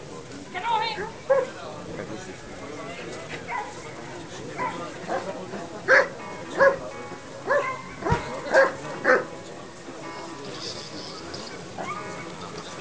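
German shepherd giving a high wavering whine near the start, then barking in short sharp barks, most of them in a quick run between about six and nine seconds in, about half a second to a second apart.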